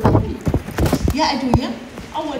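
About five sharp knocks, unevenly spaced, mixed with short bits of voices.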